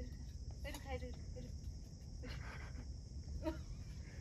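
Crickets chirring steadily in the night, with faint voices now and then.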